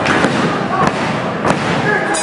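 Referee's hand slapping the wrestling ring mat in a pinfall count: several sharp slaps about a second apart over a loud, shouting crowd.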